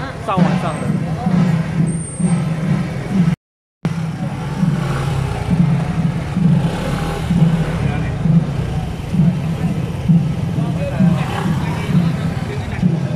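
Busy street ambience: a motor vehicle's engine running steadily, with voices around it. Music plays over the first few seconds.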